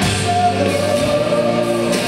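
Live rock band playing loudly, with drums and singing voices holding long notes over the band.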